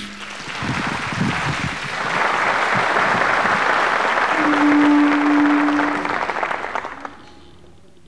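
Audience applauding, building over the first two seconds and dying away about seven seconds in. A single steady held tone sounds over the clapping for about two seconds in the middle.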